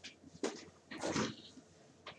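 A man's voice, quiet and brief: two short, soft vocal sounds between spoken phrases.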